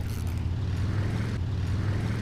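Spinning reel being cranked to reel in a hooked small bass on a drop-shot rig, over a steady low rumble.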